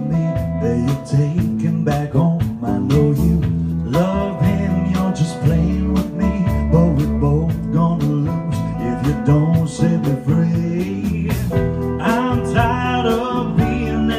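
A live band playing a jazz-pop song: a male voice singing over guitar, bass and a steady beat.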